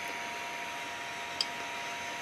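A single small click about one and a half seconds in, from the push-button of the rotary encoder knob on a Mini12864 LCD panel being pressed to select a menu item. Under it runs a steady low hiss with a faint, even whine.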